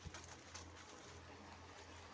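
Near silence, with a faint low hum and a few soft clicks.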